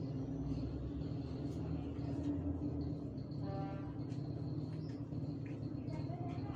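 Steady low droning hum, with a short higher-pitched tone about three and a half seconds in.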